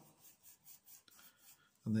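Pencil writing on paper: a few faint, short scratches.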